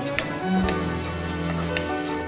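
Background music with slow sustained notes, over which a spoon stirring onions in an aluminium pressure cooker ticks lightly against the pan three times.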